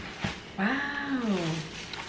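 A woman's long, wordless exclamation of delight, rising then falling in pitch over about a second.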